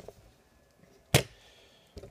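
A single sharp click about a second in, like a hard object knocking on the workbench, against quiet workshop room tone.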